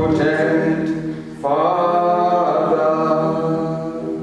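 A man singing a slow worship song in long, held notes, with a new phrase starting about a second and a half in, over a steady low accompaniment.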